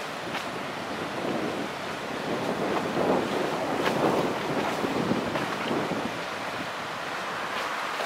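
Wind buffeting the microphone over the rushing wash of choppy water, swelling for a few seconds in the middle. No steady engine note stands out.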